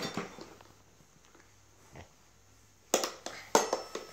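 A baby slapping the metal keys of a toy xylophone by hand: a mostly quiet stretch, then a few sharp taps with brief ringing near the end.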